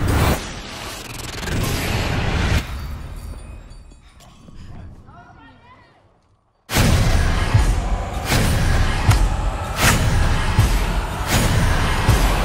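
Trailer soundtrack: a heavy hit and a rising swell that cuts off abruptly, a fade almost to silence, then loud pounding percussion returning suddenly with regular hits about every three-quarters of a second.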